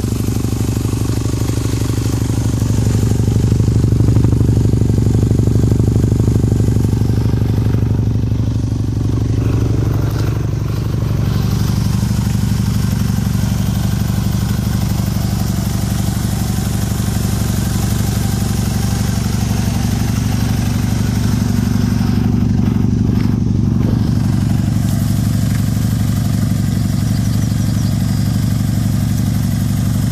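Suzuki GSX-R 600 inline-four motorbike engine in a home-built dune buggy idling steadily through a Yoshimura silencer, briefly a little louder about three seconds in.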